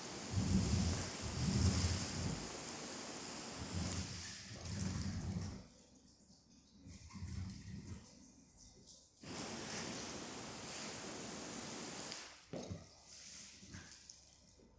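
Water spraying onto a car windshield, heard from inside the car. It runs as a steady hiss for about five and a half seconds, stops, then comes back for about three seconds. Under it the wiper blades sweep the glass with soft low thuds about once a second.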